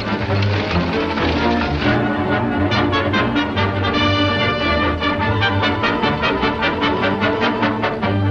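Orchestral film score led by brass, playing a driving chase cue with fast repeated notes from about three seconds in.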